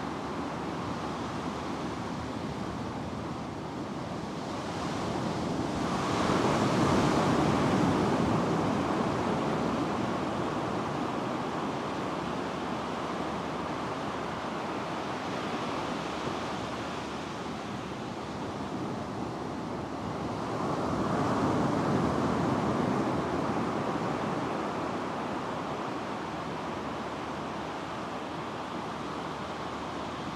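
Ocean waves breaking on the shore in a steady rush. It swells louder twice, about six seconds in and again about twenty-one seconds in.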